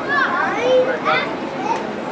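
Children's voices and chatter from a crowd, with shouts and calls that rise and fall in pitch.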